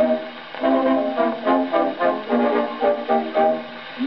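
Instrumental interlude between verses of an Edwardian music hall song on an early 78 rpm disc played on a gramophone: the band accompaniment carries the tune alone.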